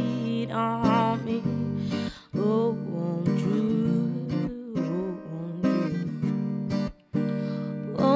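Acoustic guitar strummed with a woman singing along. The playing breaks off briefly about two seconds in and again about seven seconds in.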